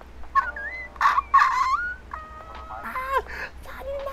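A person's high-pitched excited squeals, several in a row, sliding up and down in pitch with some held notes. They are loudest about a second in and die down near the end.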